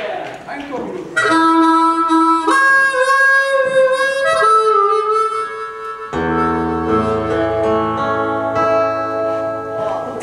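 A harmonica plays a slow melody of long held notes. About six seconds in, the band joins under it with sustained chords and low bass notes.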